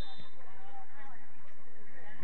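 Distant shouts and calls from football players across an outdoor pitch, over steady low background noise.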